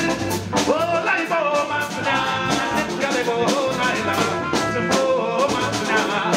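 Live band music with a steady drum-kit beat, and singers holding sliding, wordless vocal lines over it.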